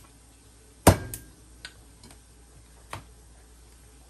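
A cleaver chopping through lobster shell onto a plastic cutting board: one loud, sharp chop about a second in, followed by a few lighter knocks and clicks.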